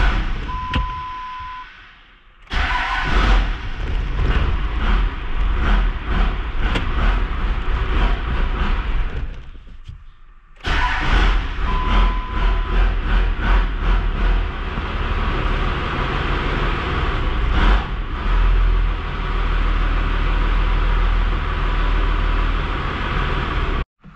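Truck diesel engine running with a steady rumble and clatter. It drops out about ten seconds in, is running again within a second, and is cut off abruptly near the end by its fuel shutoff.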